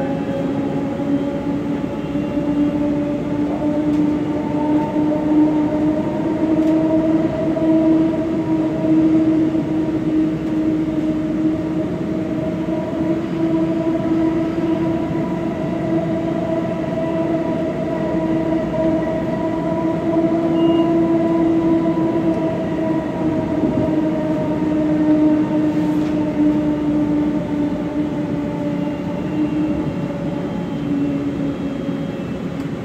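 Light-rail car running at speed, heard from inside the passenger cabin: a steady whine of the drive motors and gearing over the rumble of wheels on the track. The whine rises slightly in pitch a few seconds in and eases down toward the end.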